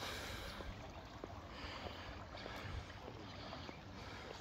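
Faint, steady wash of open-air pool water, with a low rumble of wind and handling on the phone's microphone.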